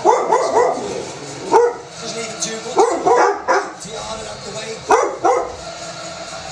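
Dog barking in short runs of one to four barks, with pauses of about a second between the runs.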